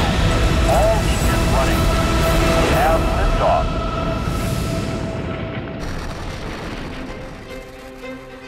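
Recorded rocket lift-off rumble, a heavy low roar with steady musical tones over it, loud for the first three and a half seconds and then fading away. Near the end, new music comes in.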